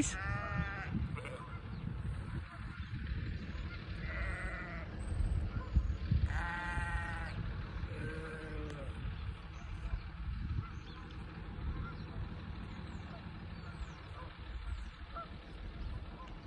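Sheep bleating, about four separate calls in the first half, the loudest about six and a half seconds in, over a steady low rumble.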